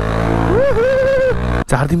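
Single-cylinder engine of a modified Bajaj Pulsar 180 motorcycle running at low revs on a dirt track. Over it, the rider gives a long, wavering vocal call starting about half a second in, and speech starts near the end.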